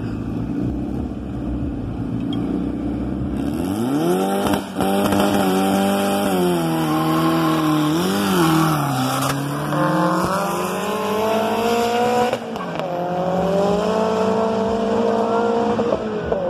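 Drag-racing car engines launching off the start line: a few seconds of low idle, then a hard rev about four seconds in. The engine pitch climbs through the gears, falling back at each upshift, as the cars accelerate away.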